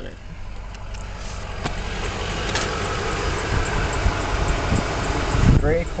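2008 Toyota Tundra's 5.7-litre V8 idling, heard from inside the cab as a steady low rumble and rushing noise that builds over the first couple of seconds.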